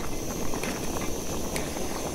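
Camping stove burner hissing steadily under a pot of vegetables pre-cooking for a stew, with the pot simmering and a few small ticks.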